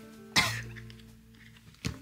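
Background music with held notes, and about half a second in a single short cough from a woman. A brief click comes near the end.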